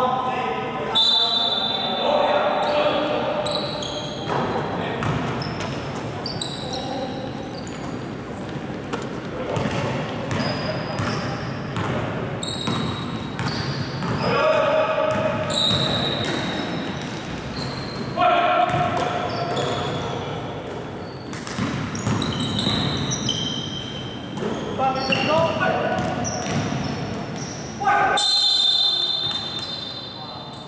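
Basketball bouncing and sneakers squeaking on a wooden gym floor during play, with players' shouts echoing in a large hall.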